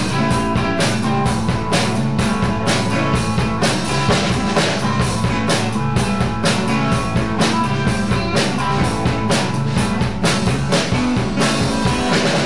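A live rock band playing an instrumental passage: electric guitars, bass guitar and a drum kit keeping a steady beat.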